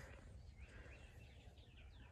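Near silence: faint outdoor ambience with a few faint high bird chirps.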